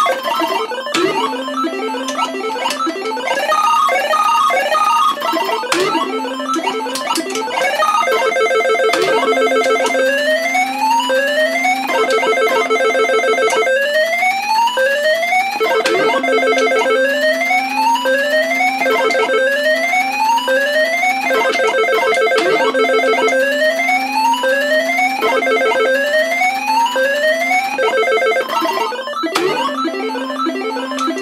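Electronic sound effects of a Universal Tropicana 7st pachislot slot machine: a steady buzzing tone under repeated rising beeping sweeps, about one every second and a half, with occasional sharp clicks as the reels are started and stopped.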